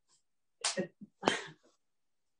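Two short, sharp vocal bursts, a little over half a second apart.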